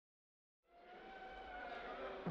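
Complete silence for about half a second, then a steady, noisy background ambience fades in, with a faint tone that sinks slightly in pitch.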